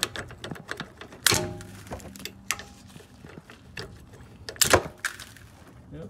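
Metal clicking and tapping from working the brake pad retaining pins loose on a rear brake caliper. Two louder knocks stand out, one about a second in with a short metallic ring and one near the end.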